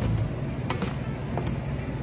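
Soft background music with a steady low bass, over which a metal spoon clinks twice against a stainless steel mixing bowl while Brussels sprouts are scraped out of it.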